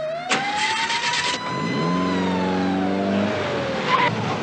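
A dune buggy's engine starts with a rough burst and then revs up as the buggy pulls away. Over it, a siren wails slowly, rising and then falling in pitch.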